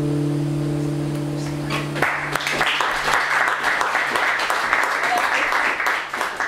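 The last chord of an acoustic guitar rings out, then about two seconds in a small audience breaks into applause that goes on to the end.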